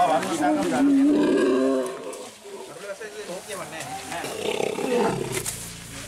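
Asian elephant calf bellowing in distress while held down, one loud, long call that fades after about two seconds, followed by men's voices.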